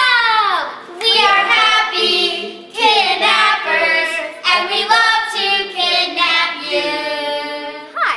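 Children singing a short jingle with long held notes, opening with a voice sliding down in pitch.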